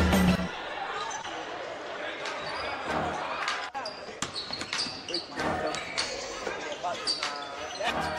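The background music cuts off about half a second in, leaving the live game sound of a basketball game in a gym. A basketball bounces on the hardwood floor, sneakers give short high squeaks, and voices call out in the echoing hall.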